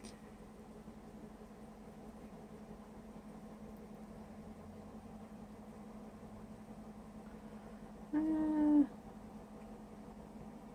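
A cat meows once, briefly, about eight seconds in, a single fairly level call that falls slightly at the end. A faint steady low hum sits under it.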